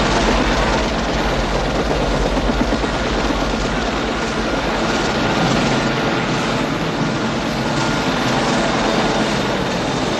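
A helicopter's rotors and engine running steadily and loudly.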